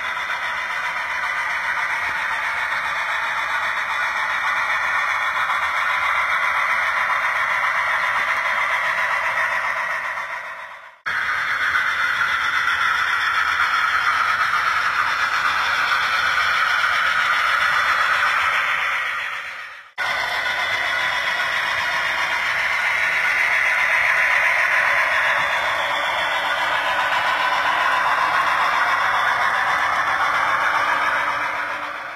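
HO scale model steam locomotive and train running along layout track: a steady rushing, rattling noise of wheels on rails. It fades out and comes back twice, about eleven and twenty seconds in.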